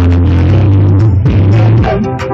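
Loud live concert music over a PA system: an electronic backing track with a heavy, sustained bass line.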